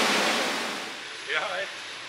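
A steady rushing noise, like blowing air, fades out over the first second, then a man's voice says a couple of words.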